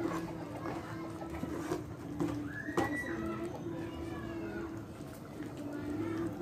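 A metal ladle knocking a few times against an aluminium cooking pot as the mung bean soup is stirred, over a steady low hum, with a short animal call that rises and falls about three seconds in.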